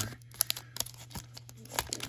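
Foil wrapper of a hockey card pack crinkling as the cards are slid out of it, in scattered sharp crackles and clicks.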